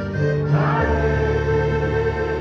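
Music: a choir singing a slow Christian song in held, sustained notes over a steady instrumental accompaniment.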